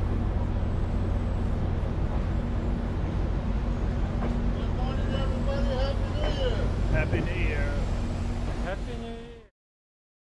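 Steady low rumble and hum of diesel passenger trains at a station platform as a double-deck railcar rolls slowly in. A voice is heard over it in the middle, and the sound fades out near the end.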